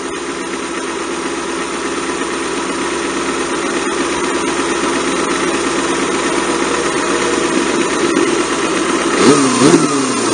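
A 1990 Kawasaki ZXR250's 250 cc inline-four idling steadily through an aftermarket BEET exhaust and silencer. Near the end the revs rise and fall sharply twice as the bike pulls away.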